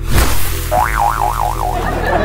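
Cartoon boing sound effect over background music: a sudden hit at the start, then a springy tone that wobbles up and down in pitch about four times and settles.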